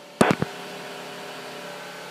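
Airband radio clicking a few times in quick succession as a transmission comes through. A steady hum of the open channel follows, with faint even tones in it.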